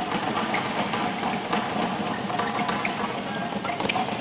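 Steady crowd hubbub in a large indoor sports hall, with music running faintly underneath and a sharp tap near the end.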